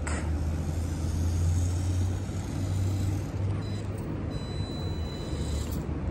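Small brushed electric motor of a 1:28-scale RC car whining faintly at high pitch as it drives on asphalt, over a steady low rumble.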